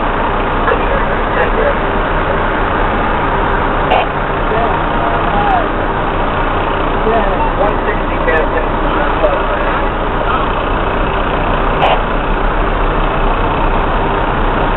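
Fire rescue truck's engine running steadily at parade crawl, heard from the jump seat inside the cab as a constant drone, with faint voices over it and two short clicks, about four seconds in and near the end.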